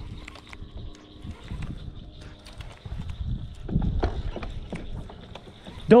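Low wind rumble on the microphone with scattered light clicks and knocks from a baitcasting reel being handled and reeled.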